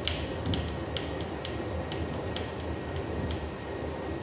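Screwdriver driving a screw into a bracket clamp on a pole: a run of light, irregular clicks, about two a second, as it is turned.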